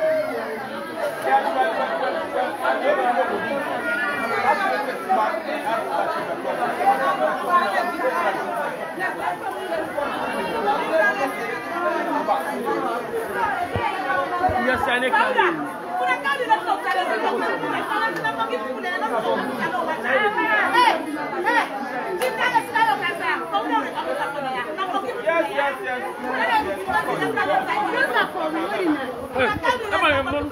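Crowd chatter: many people talking at once in a crowded room, a steady babble of overlapping voices.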